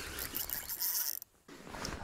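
Spinning reel working under a hooked king salmon: a rapid, rasping ratchet of reel gears and drag clicks. It breaks off for a moment just after a second in, then resumes.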